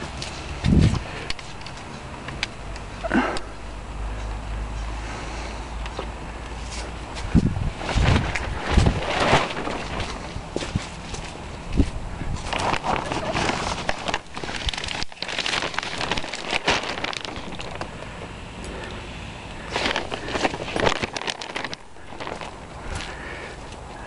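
Plastic sheeting on a garden hoop cover rustling and crinkling in irregular bursts as it is handled and its bungee cords are unhooked, with footsteps on the garden ground in between.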